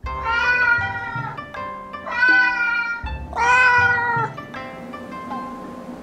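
A cat meowing three times, each a long drawn-out meow of about a second, over background music.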